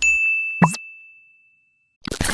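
Outro sting sound effect: a bright single-tone ding that starts suddenly and rings out, fading over about a second and a half, with a brief second hit about half a second in.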